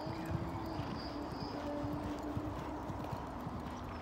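A horse's hooves thudding on a sand arena surface in a steady canter rhythm, with a faint steady high tone above.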